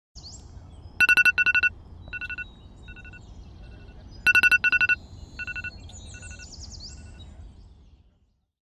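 Electronic alarm beeping in quick bursts of rapid pulses, twice, each burst trailed by fainter repeats that fade away. A low steady rumble runs underneath.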